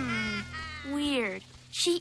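Two short wordless cries, each gliding in pitch: one falls right at the start, and a second rises then falls about a second in. Faint background music runs under them.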